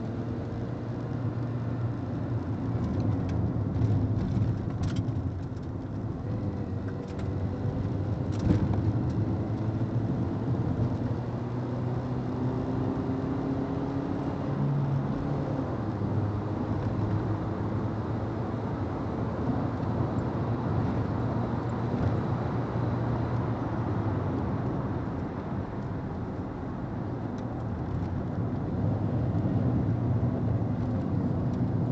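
Volkswagen Gol G3 heard from inside the cabin while lapping a race track, its engine note climbing in pitch several times in the first half, then holding steady. Under it runs constant wind and tyre noise.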